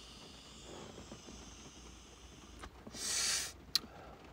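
A quiet drag on a vape pen, then a short, loud hissing exhale of vapour about three seconds in, with a couple of small clicks around it.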